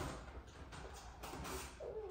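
Quiet room with a few faint, light clicks of handling, and a brief soft child's voice just before the end.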